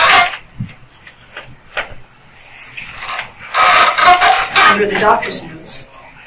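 A short, sharp noise right at the start, then a couple of seconds of indistinct speech from a person's voice about halfway through.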